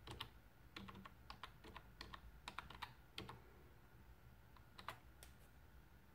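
Faint key clicks on a wireless keyboard as a short command is typed: a quick run of keystrokes over about three seconds, then a few more clicks about five seconds in.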